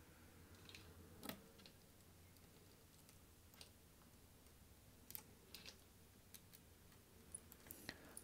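Faint, scattered small clicks of a precision screwdriver and screws on a laptop's bottom cover as the cover screws are driven in, over near silence. The clearest click comes a little over a second in, with several more near the end.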